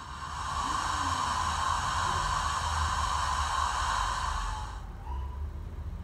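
Sampled steam hiss from a Zimo MX648R sound decoder running a Peckett sound file, played through a tiny 20 mm speaker in an O gauge model locomotive. The hiss swells in over the first second, holds steady, and fades out about five seconds in.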